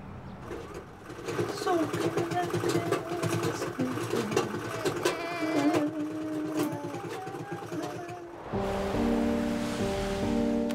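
A baby cooing and babbling in short, wavering sounds over a dense run of small clicks. About eight and a half seconds in, held music chords come in.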